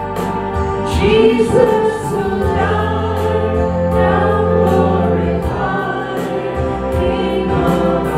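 Gospel worship song: an electronic keyboard holds long chords while a small group of male and female voices sing together through microphones.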